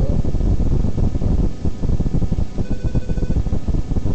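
Loud, crackly low rumble of a hand handling the camera close to its microphone, with a faint, brief high tone near the middle.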